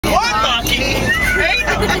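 A young girl's high voice over the steady low rumble of a moving car's cabin.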